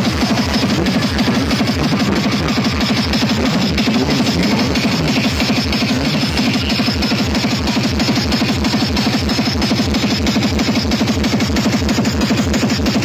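Loud electronic dance music with a fast, steady beat and heavy bass, played through a DJ sound system's speaker stacks.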